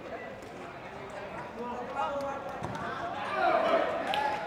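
Field sound of a small-sided football match: faint players' shouts and a few ball kicks. The shouting grows louder near the end as a goal goes in.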